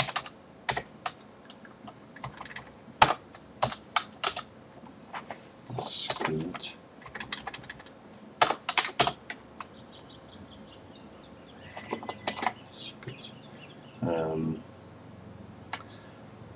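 Typing on a computer keyboard: irregular keystrokes in short runs, with pauses between them.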